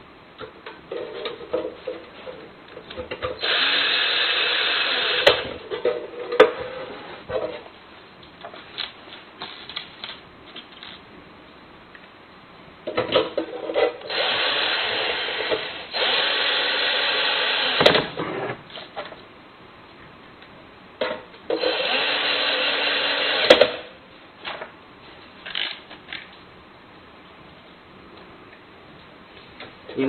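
Electric screwdriver driving in the screws that fix a smart lock's mortise lock body into the door. It runs four times for about two seconds each, and each run cuts off sharply as the screw seats. Small handling clicks come between the runs.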